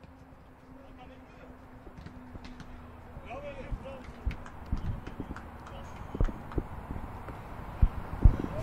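Faint on-field sound of a small-sided football match on artificial turf: irregular knocks and thumps that grow busier in the second half, with a distant shout a little over three seconds in.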